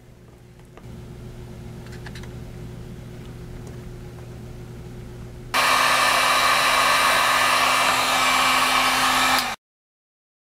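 Electric heat gun blowing hot air to shrink heat-shrink tubing over soldered wire joints. A low hum at first, then from about five and a half seconds a much louder steady rush of air with a fan hum, which cuts off suddenly shortly before the end.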